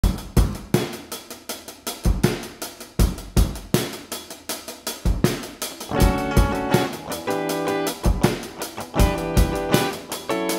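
A drum kit (kick, snare, hi-hat and Zildjian cymbals) plays a beat on its own. About six seconds in, a Rickenbacker electric guitar comes in over the drums, playing chords.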